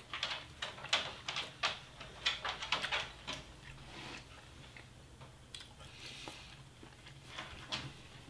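Close-miked chewing of a mouthful of burger steak and rice. A quick run of small wet mouth clicks comes first, then slower, fainter chewing with a few clicks near the end, over a low steady hum.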